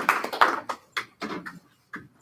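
Small group applause fading out: dense clapping thins within the first second to a few scattered claps.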